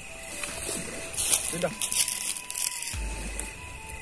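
Soft crackling and rustling in short bursts, over steady high-pitched tones, with a low rumble about three seconds in.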